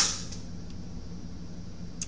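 Steady low background hum with no distinct event: room tone.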